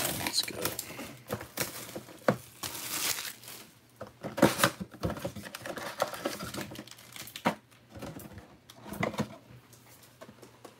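Plastic shrink wrap being torn and crinkled off a sealed trading-card box, then cardboard flaps opened and foil packs handled, in irregular crackles and rustles.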